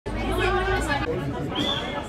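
Several voices talking and calling out at once, with a brief high-pitched tone near the end.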